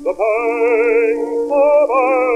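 Acoustic-era 78 rpm disc recording of a small orchestra playing a slow melody with strong vibrato over sustained accompanying notes, a new phrase entering just before the end, over faint record-surface hiss.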